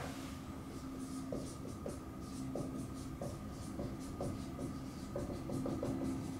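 Dry-erase marker writing block capitals on a whiteboard: a run of short, separate strokes, a few each second, over a steady faint room hum.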